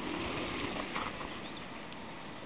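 Mountain bikes rolling along a gravel track, a steady rushing crunch of tyres with a few faint clicks in the first second.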